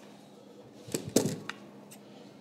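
A few light clinks and knocks of a serving ladle against a bowl and container as soup is ladled out, starting about a second in.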